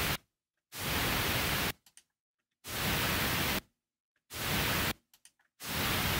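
Pink noise played back in Pro Tools in bursts of about a second, started four times, each fading up smoothly over about a quarter second because the Fade In button is on, instead of starting with a sharp, knife-edge attack. Each burst cuts off abruptly when playback stops.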